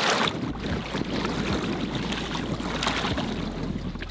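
A short splash as a smallmouth bass is let go into the lake at the water's edge, followed by steady wind rumbling on the microphone over small waves lapping at the rocky shore.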